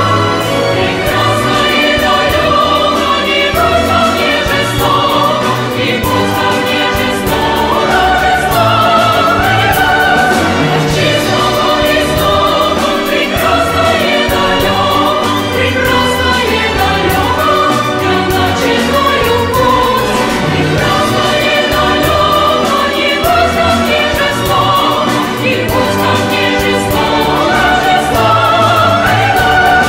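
A choir singing a Russian song in full voice, accompanied by a symphony orchestra, continuous throughout.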